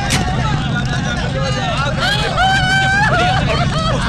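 Several men's voices shouting over one another, with one voice holding a long cry about halfway through, over a steady low rumble.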